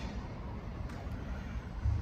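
Steady low background rumble from outdoors, with no distinct events.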